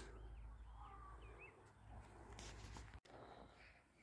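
Near silence with a few faint, warbling bird chirps in the first second and a half.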